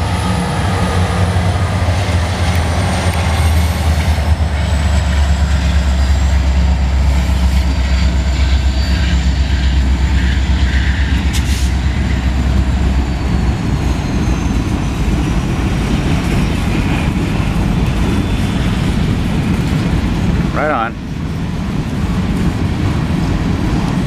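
Diesel freight locomotives passing close by: a deep, steady engine drone with a faint high whine slowly falling in pitch. About halfway through the drone gives way to the rumble and clatter of freight cars rolling past.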